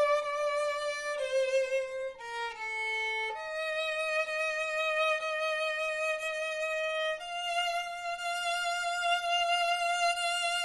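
Solo violin playing a slow bowed melody. Several shorter notes come in the first three seconds, then a long held note, moving up a step to another long held note about seven seconds in.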